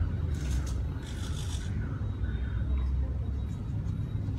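Small hobby servo motors of a robot arm whirring in two short bursts as the arm swings out. A steady low rumble runs underneath.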